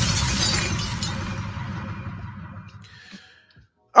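Glass-shattering crash sound effect closing a short hip-hop transition stinger with record scratching, fading away over about three seconds.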